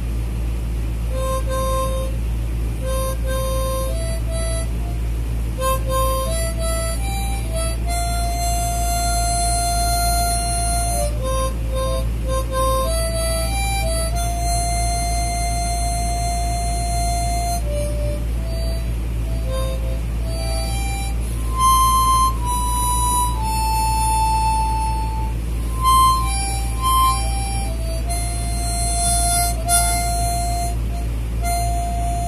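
Small plastic diatonic harmonica (blues harp) being played: a melody of short notes and long held notes, over a steady low hum.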